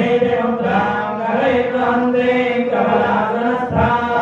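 Hindu priest chanting mantras in long, evenly held notes, without a break.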